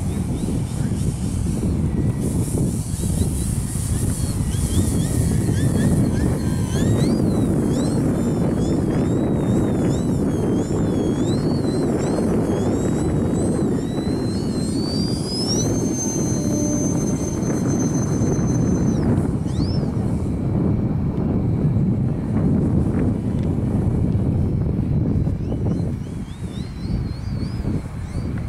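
Model airplane's motor and propeller whining high overhead, the pitch wavering up and down as it flies. Past the middle it rises and holds one steady high note for a few seconds. All the while, gusty wind rumbles on the microphone.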